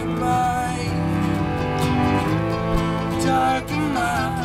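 Acoustic folk string band playing: bowed fiddle and cello holding long notes over strummed acoustic guitar and mandolin, with a sliding melody line and singing starting near the end.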